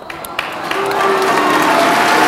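Audience applause starting up just after a performance ends and building over the first second into steady clapping, with a few voices in the crowd.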